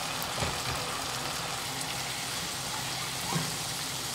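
Sardine sauce simmering and sizzling in a nonstick pan on a gas burner under freshly added slices of patola (sponge gourd), a steady hiss. Two soft knocks come about half a second in and just before the end.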